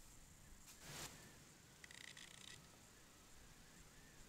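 Near silence: quiet woodland ambience, with a faint brief rustle about a second in and a short, faint high-pitched sound about two seconds in.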